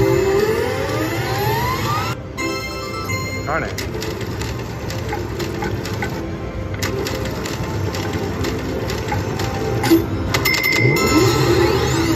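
Cash Machine slot machine spinning its reels: a rising electronic tone near the start and again near the end, with sharp clicks as the reels stop. Background voices run throughout.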